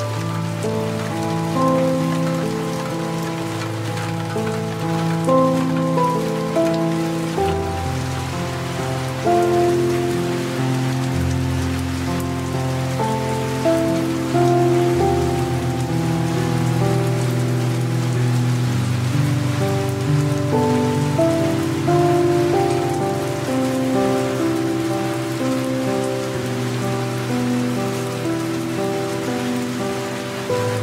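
Steady light rain mixed with soft, slow piano music: held notes and low bass notes that change every few seconds under an even hiss of rain.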